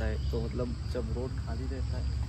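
A man talking, over a steady high-pitched insect drone in the background.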